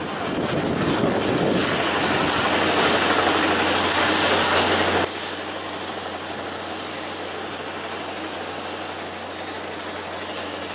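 Construction-site machinery running: a dense, noisy mechanical din with scattered clicks and knocks. About halfway through it drops suddenly to a quieter, steady mechanical noise.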